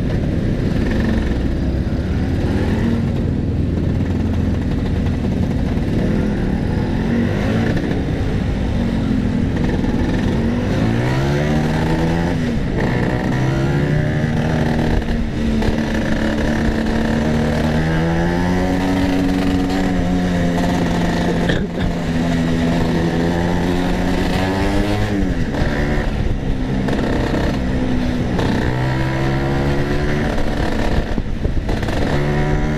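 Two-stroke Vespa racing scooter's engine, running low and slow for about the first ten seconds, then accelerating. Its pitch climbs and drops back several times as it is ridden on and off the throttle and through the gears.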